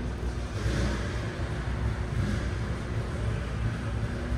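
Shelby Series 1's 4.0-litre DOHC 32-valve V8 idling steadily, heard from behind at its dual exhaust tips.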